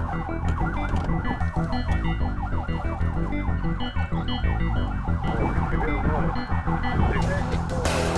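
Police car siren in a fast rising-and-falling yelp, fading out about five seconds in, over a background music track with a steady bass line.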